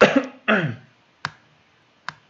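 A person coughs twice in quick succession, then a single sharp click follows about a second later.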